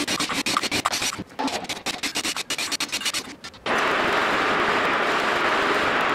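Cordless drill backing the tension rods out of a snare drum's lugs: a quick clatter of metal clicks and rattles for about three and a half seconds, then a steady rasping run of about three seconds that cuts off suddenly.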